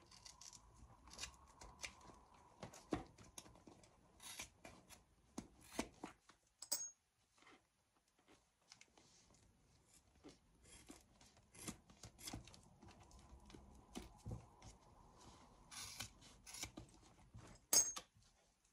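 Scissors snipping through a handbag's leather strap tabs in short repeated cuts. Twice, about a third of the way in and at the very end, there is a sharp, ringing metallic clink, the loudest sounds here, as a freed metal handle ring is dropped onto the others.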